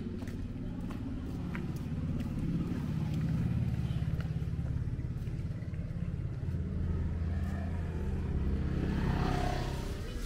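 A vehicle engine running close by: a steady low hum that swells a few seconds in and again near the end.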